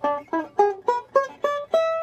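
Five-string resonator banjo picked in single notes: a blues lick in E of about seven notes at an even pace, the last one left ringing. It is played high on the neck, an octave above the lower form of the same shape.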